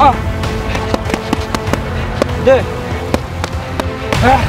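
Boxing gloves smacking focus mitts in a series of sharp slaps during pad work, over background music with sustained tones.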